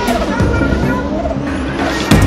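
Drift car engine revving hard during a tandem drift, its pitch climbing and falling, under a music soundtrack.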